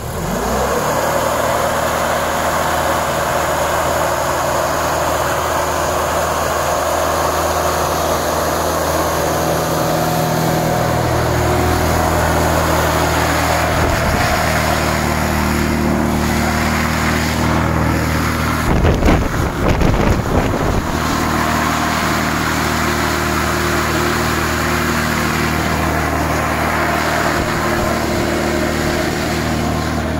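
Rescue hovercraft running steadily: its engine and large rear ducted propeller fan drive the craft off the sand and across the icy lake. About two-thirds through there is a brief burst of louder rough noise.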